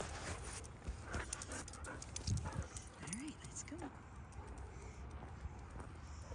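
Quiet steps and scuffs on a concrete sidewalk as a dog and its handler walk off on a long line, with a few short, faint vocal sounds between about two and four seconds in.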